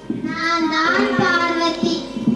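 A girl's voice singing a drawn-out line into a microphone, the held note wavering in pitch.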